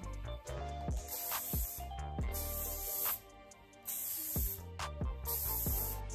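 Four short hissing bursts from an aerosol can of L'Oréal Infinium Pure hairspray, about every second and a half, over background music with a steady beat.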